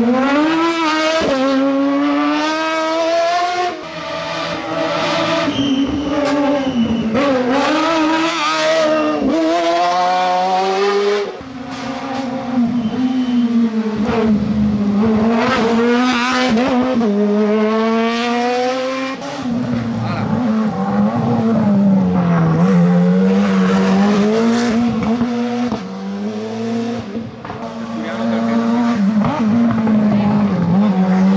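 Hillclimb sports prototype race cars accelerating past one after another, each engine revving hard and climbing in pitch through the gears, dropping back briefly at each upshift. About four cars go by in turn.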